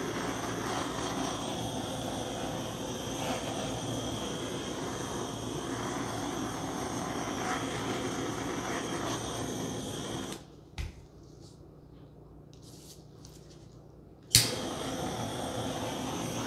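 Handheld butane torch burning with a steady hiss as it is passed over wet acrylic paint to pop air bubbles. It cuts off about ten seconds in, then is relit with a sharp click near the end and burns again.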